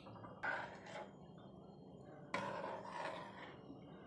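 A spoon stirring thick curry gravy in a metal pot: two faint scraping swishes, one about half a second in and a longer one a little after two seconds.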